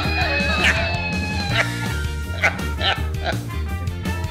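A plush toy dog yapping, several short high yips, over background music with guitar and a steady bass beat.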